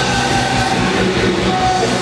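Punk rock band playing live: electric guitar, bass guitar and drum kit going together, loud and dense.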